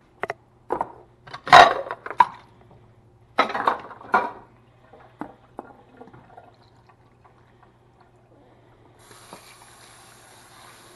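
Leftover marinade poured out of a plastic container into a kitchen sink, splashing in a few loud bursts over the first four seconds, with smaller knocks after. About nine seconds in the kitchen tap comes on, water running steadily into the container.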